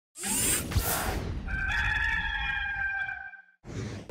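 A whoosh with a low hit, then a rooster crowing once for nearly two seconds, as a sound effect in an animated logo intro.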